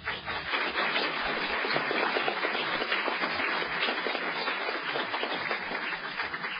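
Audience applauding steadily: many people clapping together.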